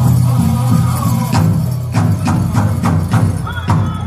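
Powwow drum group playing a men's fancy dance song: a big drum beaten in a steady fast rhythm under faint high group singing, with a run of sharper, louder strikes in the second half.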